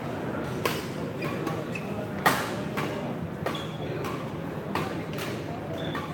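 Badminton rally: rackets striking the shuttlecock in about five sharp cracks spaced roughly a second apart, the loudest a little over two seconds in, over a murmur of spectator chatter.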